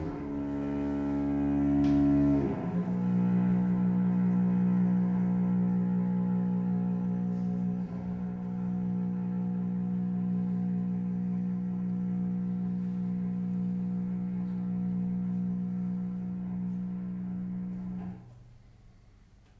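Bowed strings (solo cello with violin, viola and double bass) in contemporary microtonal chamber music, holding sustained chords. About two and a half seconds in the lower notes drop away, leaving one long steady held note that stops abruptly at the end.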